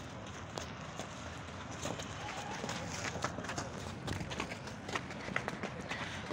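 Running footsteps on a dirt ground, many short irregular steps of several people.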